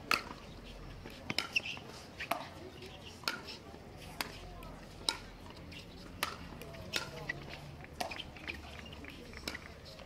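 Pickleball rally: hard paddles striking a plastic perforated ball, with bounces on the court, giving about a dozen sharp pops spaced roughly a second apart.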